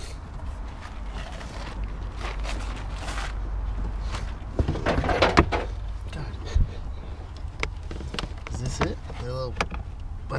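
Hands working plastic trim and a wiring connector inside a Nissan 240SX's trunk: scattered clicks and knocks, with a cluster about halfway through, over a low steady rumble.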